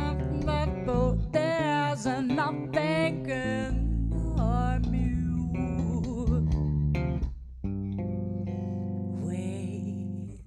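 A woman singing a wavering, wordless melody over an electric bass guitar playing low sustained notes and chords. About seven seconds in the voice falls away and the bass carries on alone.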